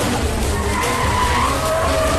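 A Maruti Gypsy jeep skidding across tarmac, its tyres squealing in drawn-out tones that slide in pitch, over the rumble of its engine.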